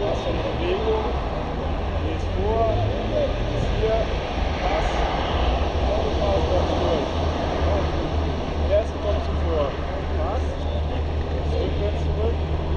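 Outdoor ambience: a steady low rumble with indistinct distant voices throughout, and a few faint ticks.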